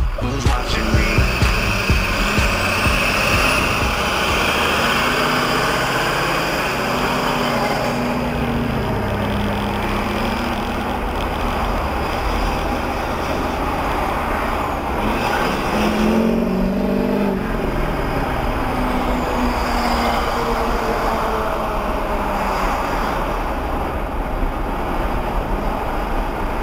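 Steady road and engine noise inside a moving car, picked up by a dashcam, with a radio playing faintly in the cabin.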